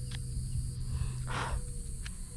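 A handheld metal-detecting pinpointer gives a faint steady tone over a low buzz while its tip is pressed against a small crumpled piece of aluminum. The tone breaks off and returns, and there is a short rustle partway through.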